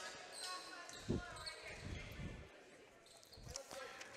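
A volleyball bounced a few times on a hardwood gym floor before a serve, dull thuds in a large hall, the clearest about a second in.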